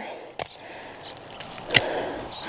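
A soft rustle, then one sharp knock near the end: a piece of weathered wood dropped onto wood-chip-mulched soil to mark a planted row.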